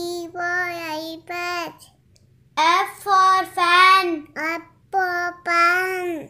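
A child singing the alphabet phonics chant, the lines for E (elephant) and F (fan), in held, sing-song phrases with a short pause about two seconds in.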